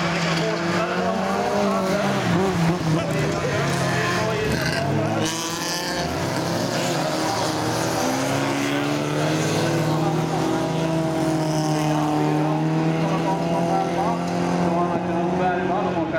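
Several folkrace cars' engines running hard on a gravel track, racing past together. Their overlapping engine notes rise and fall as the drivers lift and accelerate through the corner, and one note drops away about halfway through.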